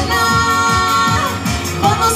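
A woman singing a pop song live into a microphone over a pop accompaniment with a steady drum beat. She holds one long note for about a second, then slides down from it.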